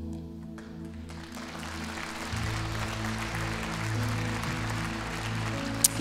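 Soft sustained chords from the worship band, changing chord about two seconds in, with congregation applause building from about a second in.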